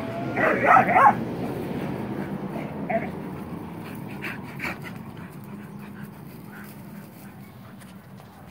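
Dogs at play, making a few short, faint sounds scattered through the first half. A person laughs briefly near the start.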